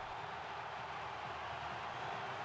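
Stadium crowd cheering after a goal, a steady wash of noise.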